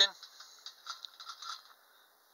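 Faint, irregular light clicks and rattles from a small tin wind-up toy, its hanging balloon gondolas and tower mechanism handled and set moving.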